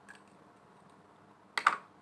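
Tarot card deck handled on a wooden table: a short, sharp clatter of the cards near the end, as the hands gather the deck, after a quiet stretch.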